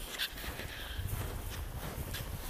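Footsteps in snow, a run of soft, irregular thumps.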